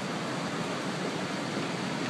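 Steady, even noise like a hiss, with no distinct events.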